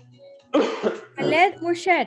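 A person coughing and clearing their throat, with voiced, pitch-bending sounds in it, starting about half a second in and stopping just at the end, over soft background music.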